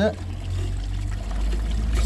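Water trickling faintly from a small leak at a newly fitted water meter and stop tap assembly, over a steady low rumble.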